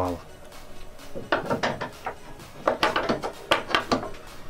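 A small metal fret saw frame clinking and knocking against hand tools on a plywood tool wall as it is handled. There are two short bursts of clatter, one a little after a second in and a longer one near the end.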